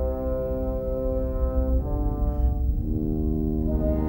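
Silent-film score music: held brass chords that move to a new chord about two seconds in and again about a second later, over a steady low bass.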